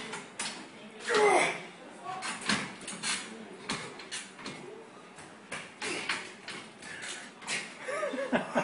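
Indistinct voices of arm-wrestlers and onlookers, with a louder voice about a second in, and scattered short sharp knocks and clicks.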